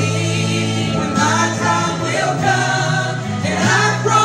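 Three women singing a gospel song into microphones over an instrumental accompaniment with steady held bass notes.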